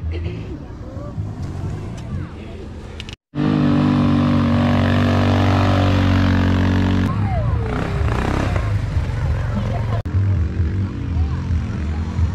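Quad bike (ATV) engine running with a loud, steady hum, starting abruptly about three seconds in and lasting about four seconds before it is lost among voices. Mixed voices and other noise fill the rest.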